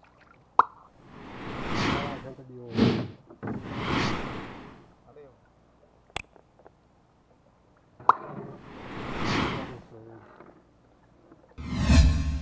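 Mouse-click sound effects, each followed by a swelling whoosh, from an animated comment-and-share prompt; there are three clicks and three whooshes, with a louder rush about three seconds in. A new, louder sound starts just before the end.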